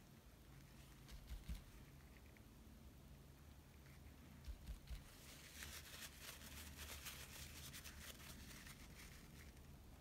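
Near silence, with the faint crinkle of a crumpled paper towel being pressed and dabbed onto wet acrylic paint on a canvas. The crinkling is densest in the second half, with a couple of soft low bumps earlier, over a steady low hum.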